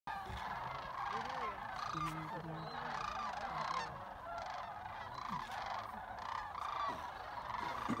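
A flock of sandhill cranes calling in flight, many birds giving rattling calls at once in a continuous, overlapping chorus.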